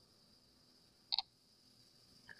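Quiet room tone broken by a single short click a little over a second in.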